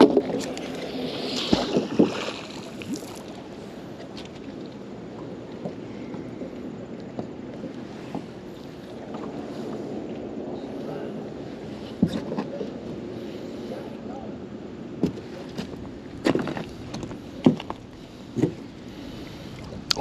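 Small boat on the water: a steady low rumble of water and hull noise, with a brighter hiss in the first few seconds and a handful of sharp knocks from gear moving in the boat.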